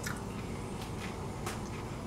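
A person chewing a mouthful of sushi with the mouth closed: a few faint, short mouth clicks over a steady low background hiss.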